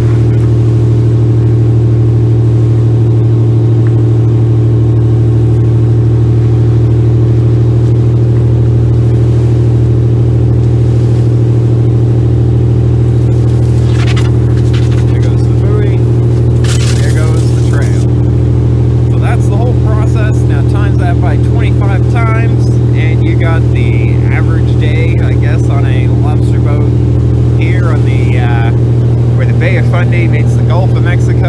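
Lobster boat's diesel engine running steadily under way, a loud constant drone with a strong low hum. A brief hiss comes about two thirds of the way in, and indistinct voices talk over the engine in the last third.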